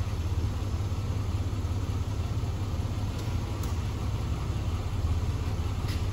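1998 GMC Jimmy's 4.3-litre V6 engine idling steadily, a low even rumble.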